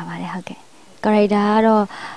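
A woman speaking into a close microphone, with a short pause about half a second in before she goes on.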